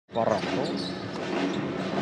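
Game sound of an indoor basketball match: a basketball being dribbled on the hardwood court over a steady arena background of crowd and hall noise, with a brief voice just after the start.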